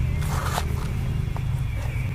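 A wooden match is pulled from a cardboard matchbox: a brief scratchy rustle near the start, then a couple of small clicks of handling, over a steady low hum.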